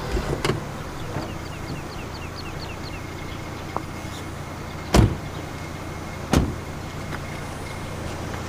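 Two car doors shut, about a second and a half apart, over a steady low hum. A quick run of faint high chirps comes before them.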